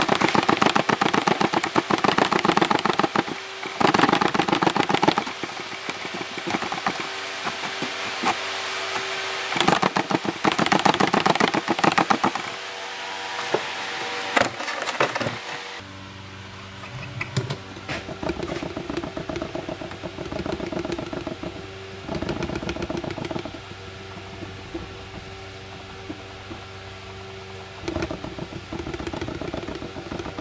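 Handling noise from a handheld camcorder being shaken and moved about: rubbing, knocks and rattles picked up by its own microphone, over a steady low hum. About halfway through, the sound turns quieter and duller.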